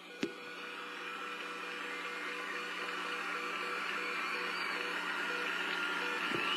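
Game-show video game music during a wheel spin: a short note repeating evenly about three times a second over steady held notes and a bright hiss that slowly grows louder.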